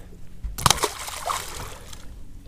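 A bass dropped back into the lake: one splash about half a second in, followed by fainter sloshing of water.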